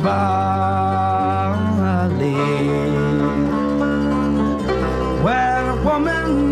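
Traditional Irish folk music: long held melody notes that slide up into new pitches near the end, over plucked-string accompaniment and a steady bass.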